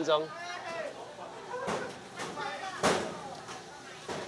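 Faint voices in the background, with a single sharp knock about three seconds in.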